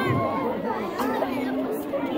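Many children's voices chattering at once, overlapping and indistinct.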